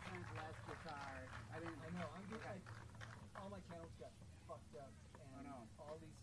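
Faint, unclear talking between songs, off-microphone, over a low steady hum.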